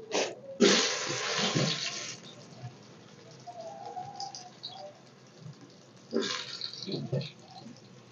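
Soya chunks dropped into hot oil in a steel pot, sizzling sharply for about a second and a half as they hit the oil, then fading. A second, shorter sizzle comes about six seconds in as more chunks go in.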